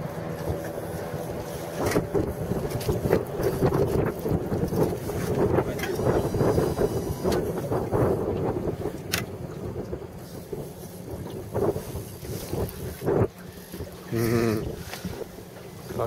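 Wind buffeting the microphone over choppy water by a small boat, with a short voice near the end.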